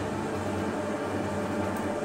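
Steady background noise, a low hum under an even hiss, with no distinct events.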